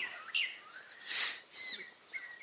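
Birds chirping and giving short descending whistles, with a brief soft hiss about a second in.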